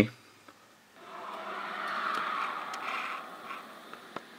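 Sound of a Snapchat video snap playing through a small phone speaker: a thin, hiss-like noise that swells about a second in and fades near the end.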